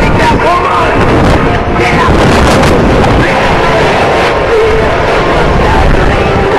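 Jet engine noise from a formation of four Blue Angels F/A-18 Hornets making a low pass, heavy in the low end and mixed with wind on the microphone and background music.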